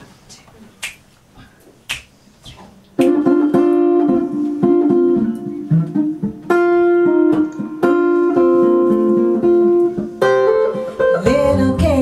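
Finger snaps about once a second, then about three seconds in the song's intro starts: guitar chords ringing over an upright double bass, played as a steady, unhurried groove.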